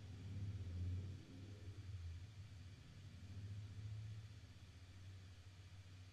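Quiet room with a faint low hum that swells twice, about a second in and again around four seconds.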